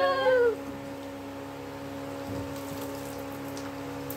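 A conch shell blown in a steady, loud tone over women's ululation. The conch drops in pitch and stops about half a second in, leaving a faint steady hum.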